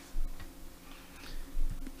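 A few soft clicks and low thumps, spread unevenly over a low room hum: handling noise close to the microphone.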